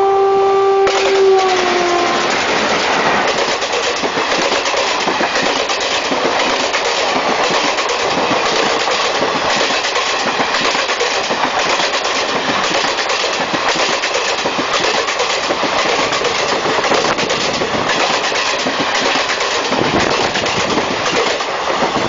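An Indian Railways WAG5 electric locomotive passes close at speed with its horn sounding. The horn's pitch drops as the locomotive goes by, and it stops about two seconds in. The express's coaches then rush past, their wheels clattering rhythmically over the rail joints.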